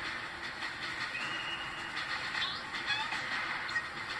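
Cartoon soundtrack heard through a television speaker: background music with light sound effects.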